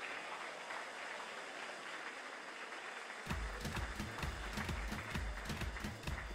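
Audience applauding, fairly faint and even. About three seconds in, a low, uneven thudding comes in beneath the clapping.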